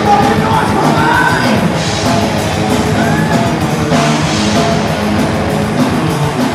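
A heavy metal band playing live and loud: distorted electric guitars over rapid drumming with fast, even cymbal strokes, and a vocalist yelling into the mic.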